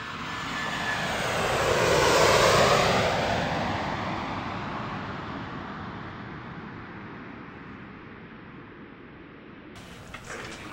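Jet airliner passing by: the engine noise swells to a peak about two to three seconds in, then fades slowly, its pitch falling as it goes.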